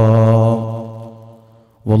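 A man chanting an Arabic devotional verse, holding one long low note that fades away over about a second, then starting the next line just before the end.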